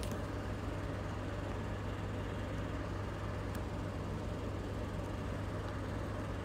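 A steady low hum of room background noise, even throughout, with its weight at the bottom end.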